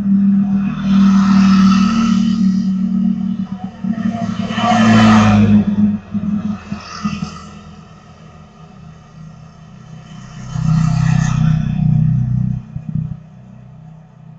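Motorbike engines passing along the street, the sound swelling and fading three times: near the start, about five seconds in, and again about eleven seconds in.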